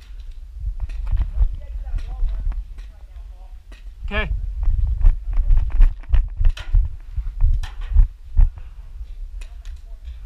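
Scattered sharp pops, typical of paintball markers firing around the field, over a steady rumble of wind on the camera microphone. A brief distant shout comes about four seconds in.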